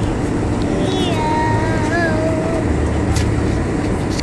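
Steady low rumble of an airliner cabin, with faint voices in the background.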